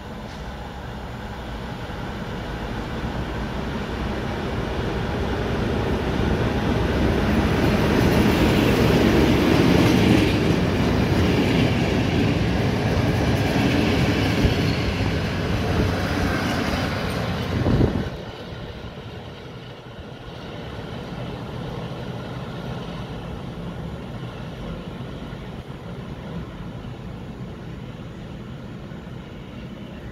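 SM42 diesel shunting locomotive running with its train, growing louder over the first ten seconds or so. About eighteen seconds in, the sound falls off suddenly to a lower, steady rumble.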